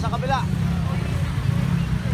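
Many motorcycle and scooter engines idling and creeping in stop-and-go traffic, a steady low rumble, with people's voices briefly at the start.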